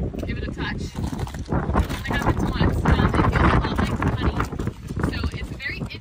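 People talking outdoors, the voice partly drowned by wind rumbling on the microphone.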